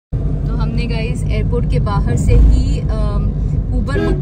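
Steady low road-and-engine rumble inside a moving car on a highway, loudest about halfway through, with a person's voice talking over it.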